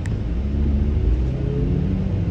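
Car cabin noise while driving: a steady low rumble of engine and road, with a faint engine note that rises a little in pitch.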